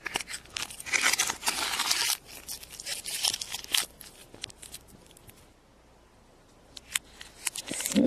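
Foil wrapper of a chocolate surprise egg crinkling and tearing as it is peeled off by hand: dense crackling for the first two seconds, then scattered crackles and clicks, quieter in the middle, with a few sharp clicks near the end.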